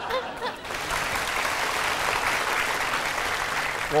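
Studio audience applauding, a steady clapping that builds up about half a second in and carries on.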